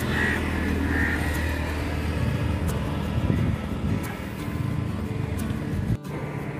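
A steady low rumble of road traffic under background music.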